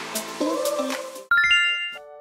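Intro music with a steady beat that cuts off suddenly about a second in. A bright chime sound effect follows, a quick run of ringing bell-like notes stepping upward, which is the loudest part.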